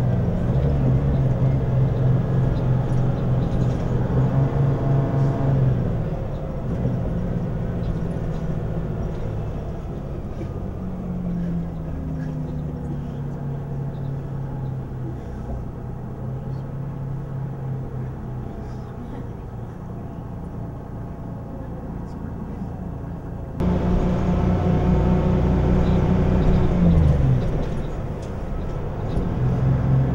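City bus engine running, heard from inside the passenger cabin: a steady low drone that drops away about six seconds in, climbs back, jumps up suddenly later on, then falls again near the end as the bus speeds up and slows.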